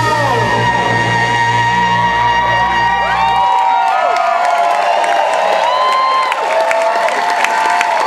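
A live funk band holds its final chord, the bass cutting off about three and a half seconds in, while the crowd cheers and whoops; some held notes keep ringing over the cheering to the end.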